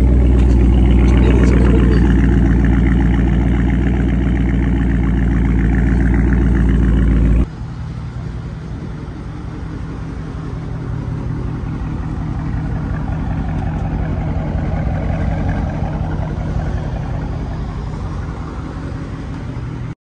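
Dodge Charger Scat Pack's 6.4-litre HEMI V8 idling steadily. About seven and a half seconds in, its sound drops suddenly to a lower level, then carries on, swelling a little midway.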